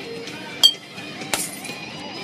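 A glass beer bottle struck twice against a bed of broken bottle glass, giving two sharp glass clinks about 0.7 seconds apart.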